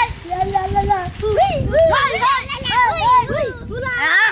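Several boys' voices shouting and chattering together, with many voices overlapping from about a second in.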